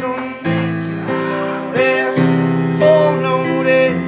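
Piano chords struck and left ringing, with a held, wavering wordless vocal line sung over them.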